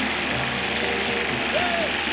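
Cartoon soundtrack from a television, picked up by a phone's microphone: a steady noisy din with a short rising-and-falling voice-like sound near the end.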